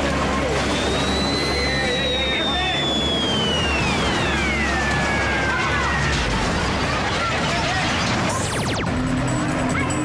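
Helicopter hovering close overhead: a low steady drone with a high whine that slides slowly down in pitch over several seconds, the drone dropping away about six seconds in. Voices and music sit under it, and a quick rising sweep comes near the end.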